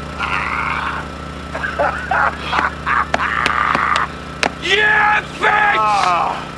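Several men laughing and shouting in loud bursts, the last laughs falling in pitch, over a steady low hum with a few sharp clicks.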